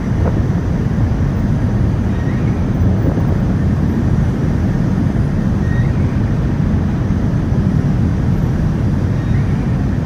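A ferry's machinery running: a loud, steady, low drone with no change in pitch.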